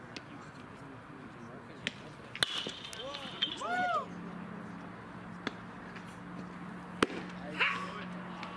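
Ballfield chatter: voices calling out in long drawn-out shouts, with two sharp pops, the louder one near the end being a pitched baseball smacking into the catcher's mitt. A steady low hum comes in about halfway.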